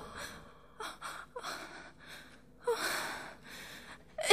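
A woman's acted gasps and breathy exhalations in a radio drama, a few short ones and then a longer breath near the end, as her stomach pain eases.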